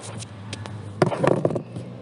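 A few light clicks and taps of hands handling a car's plastic dashboard trim, with a sharper click about a second in, over a steady low hum.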